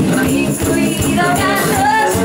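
Live band playing a pop-rock song: a woman's lead vocal over strummed acoustic guitar, electric guitar, bass and drums keeping a steady beat.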